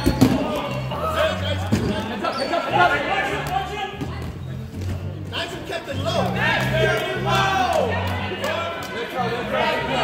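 Rubber dodgeballs hitting and bouncing on a wooden gym floor: a few sharp thuds, the loudest right at the start. Underneath are background music with a steady bass line and players' voices, in a large hall.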